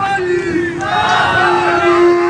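A crowd of party supporters shouting slogans together, with one long, steady held note running under the voices from just after the start.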